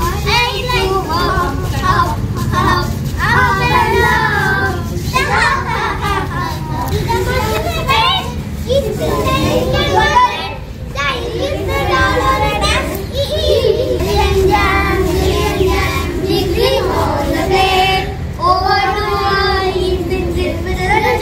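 A group of young children singing a phonics alphabet action song together, the voices running on continuously, over a steady low rumble.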